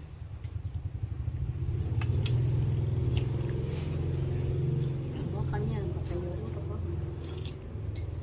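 A motor vehicle engine running nearby, a low steady hum that grows louder over the first couple of seconds, is loudest for a few seconds and then eases off. A few light clicks of a spoon on a plate sound over it.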